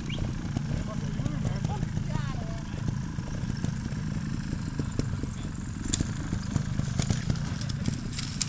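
Trials motorcycle engines running at low revs, a steady low rumble.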